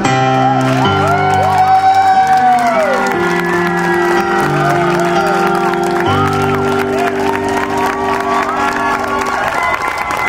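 Yamaha CP stage piano playing slow, sustained final chords that change a few times and die away near the end. Audience clapping, whoops and cheers run over the chords.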